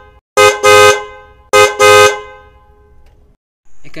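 Car horn honking in double beeps, a short beep followed by a longer one, twice about a second apart. The last pair fades out over about a second.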